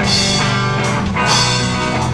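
Live rock band playing through a PA: strummed acoustic and electric guitars with a steady, regular beat.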